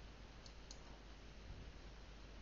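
Two faint computer mouse clicks about a quarter of a second apart, clicking the IDE's Run button, over near-silent room tone.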